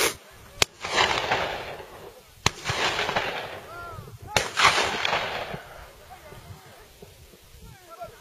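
Three gunshots from a hunting gun, about two seconds apart, each followed by a long rolling echo off the hillside.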